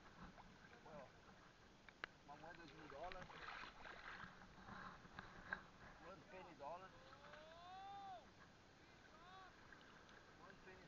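Near silence, with faint far-off voices calling, one drawn-out call rising and falling about seven seconds in, over faint water sloshing. Two small sharp clicks come about two seconds and five and a half seconds in.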